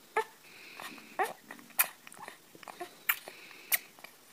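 A newborn baby mouthing and sucking on a man's nose, making about five short wet smacks and little squeaky grunts.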